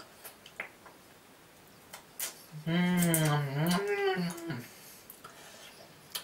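A man's drawn-out wordless vocal sound, a hum or groan about two seconds long in the middle, with a few faint clicks and taps before it as he handles a plastic yogurt tub.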